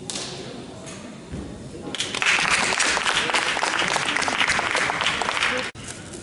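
Audience clapping, starting about two seconds in as a dense patter of many hands and cutting off abruptly near the end.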